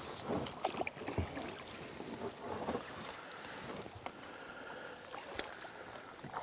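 Small boat on calm water: faint lapping against the hull with scattered light knocks and clicks from the boat and gear, and a little wind on the microphone.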